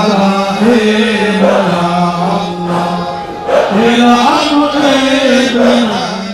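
Men's voices chanting together in a religious dhikr, with long drawn-out sung lines and a brief pause about three and a half seconds in.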